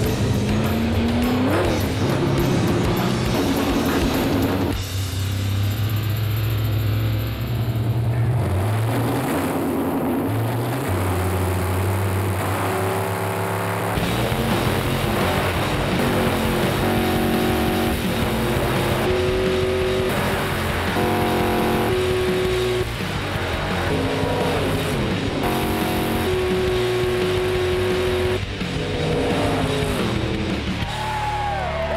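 V8 drag-race engines at full throttle as a big-block Ford Falcon and a small-block Chevy–powered Datsun 260Z race down the strip, the pitch climbing about a second in. Background music with a melody comes in about halfway through and plays over the engines.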